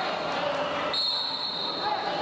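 A long, high, steady whistle blast starting about a second in and lasting about a second, over voices and crowd noise echoing in a large hall.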